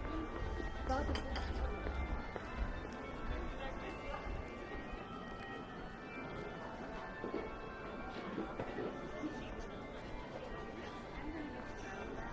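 Pedestrian street ambience: passersby talking, with music playing in the background.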